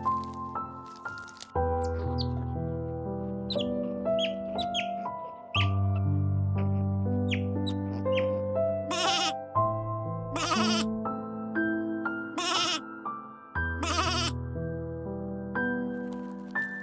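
Soft background music of sustained keyboard chords, with a sheep bleating four times in the second half, each bleat about half a second long and the four spaced a second and a half to two seconds apart.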